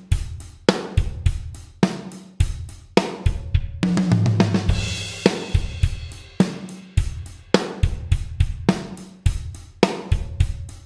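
Programmed rock drum groove at 105 bpm on a sampled acoustic kit: steady kick, snare and hi-hat. About four seconds in, a cymbal crash and a fill down two toms, higher then lower, before the groove resumes.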